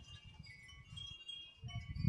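A wind chime ringing faintly, several high notes lingering.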